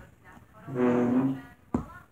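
A low note hummed by a person's voice, held steady for under a second, then a single sharp click near the end.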